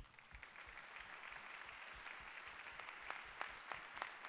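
Audience applauding, the clapping swelling over the first second and then holding steady, with a few sharp individual claps standing out near the end.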